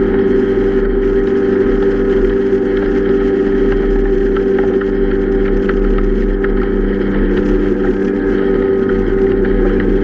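A small boat's outboard motor running steadily at cruising speed, an unchanging engine drone over a hiss of water.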